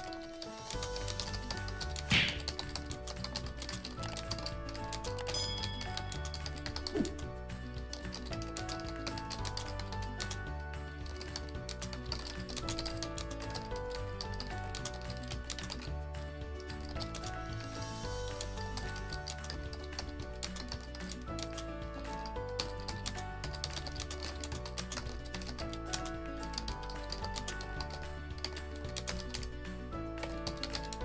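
Fast typing on a computer keyboard: a steady patter of keystrokes with a louder click about two seconds in, over background music.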